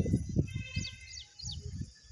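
A bird calling three times in quick succession, short high chirps each falling in pitch, about a second in. People talk faintly underneath, loudest at the very start.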